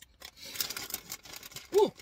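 Crinkling of a Ruffles chip bag as a hand rummages inside it for chips, a papery rustle lasting about a second.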